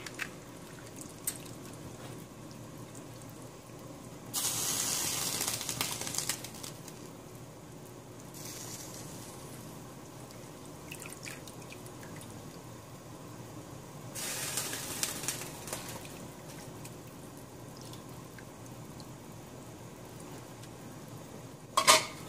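Vegetable broth simmering in a stainless steel pot, a steady low bubbling, with two louder bursts of watery noise about four seconds in and again about fourteen seconds in as bok choy goes into the pot.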